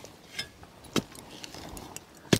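Lump charcoal crackling as it catches fire: two sharp clicks about half a second apart over a faint hiss.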